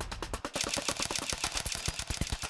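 A rapid, even run of sharp clicks, about a dozen a second, many with a low thud, like a fast shutter or ticking sound effect. The deep bass of the preceding music drops away about half a second in.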